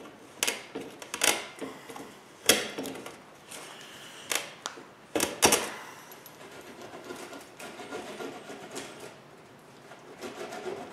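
Spline roller pressing the rubber spline and metal screen mesh into the channel of an aluminium screen-door frame: a run of sharp, irregular clicks and crinkles, fewer and softer after about six seconds.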